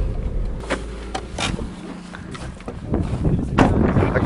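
Car cabin rumble from engine and dirt-track road noise, fading as the car slows, with a few short knocks. A louder rush of noise comes in near the end.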